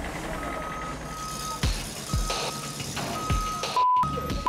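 Truck's reversing alarm beeping about once a second, each beep about half a second long, as the armored truck backs up. Three deep, falling swoops sound through it, and a steady bleep tone starts just before the end.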